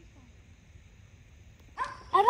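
Quiet outdoor ambience with a low wind rumble on the microphone. Just before the end a sudden loud, high-pitched sound cuts in.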